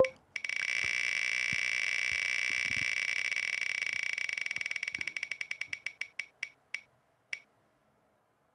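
Online picker wheel's spin sound effect: a rapid run of clicking ticks that spread out and slow as the wheel winds down, the last tick about seven seconds in as it comes to rest.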